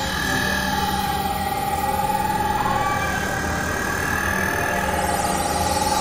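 Dense experimental electronic drone mix: sustained, slowly wavering tones layered over a steady noisy wash, with no clear beat.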